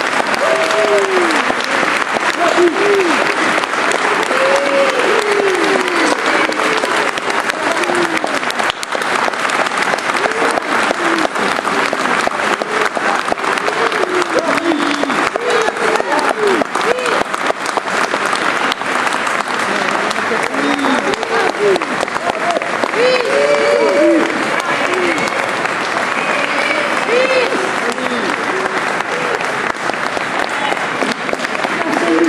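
Audience applauding at length, dense steady clapping throughout, with voices calling out over it.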